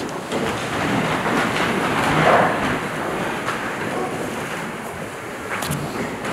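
Congregation sitting down in the pews after the opening prayer: a steady rustling and shuffling noise, with a couple of knocks near the end.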